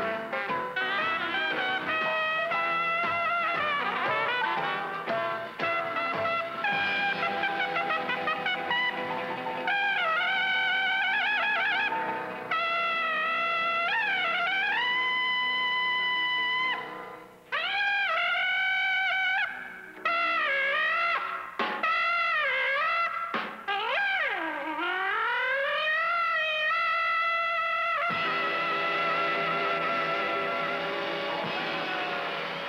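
Jazz trumpet with a small band in the bold, exuberant 1920s trumpet style: trumpet and trombone play together at first, then the trumpet goes on alone from about ten seconds in with wavering, bent notes and a deep swoop down and back up. It ends on a long held note with vibrato before the band comes back in near the end.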